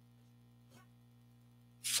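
Near silence with a steady low hum; a man's voice starts just before the end.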